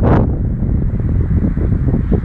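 Strong wind buffeting the microphone: a loud, uneven low rumble with no steady tone.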